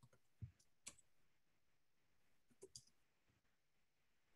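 Near silence: quiet room tone with a few faint clicks, including a soft low thump about half a second in and a short cluster of clicks near the three-second mark.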